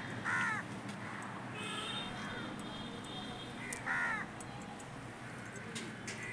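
Crows cawing: two short caws, one about half a second in and one about four seconds in, with a fainter call about two seconds in.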